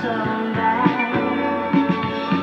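Rock music: a band with guitar and drums, with sustained, gliding melody lines over a regular drum beat.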